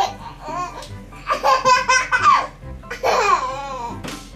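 A toddler laughing hard in several loud, choppy bursts of belly laughter, with light background music underneath.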